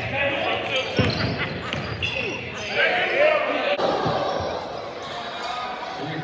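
Basketball being dribbled on a hardwood gym floor, the bounces echoing, with spectators' voices in the gym. The sound changes abruptly about four seconds in.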